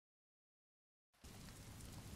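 Silence, then faint rain fading in a little over halfway through as an even hiss.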